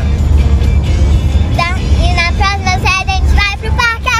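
A young girl singing in a high, sliding voice, starting about one and a half seconds in, over the steady low rumble of a moving car's cabin.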